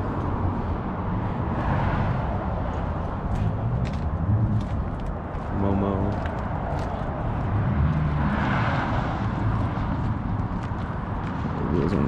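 Outdoor car-meet ambience: a steady low rumble with background voices of people talking nearby, one voice standing out briefly about halfway through.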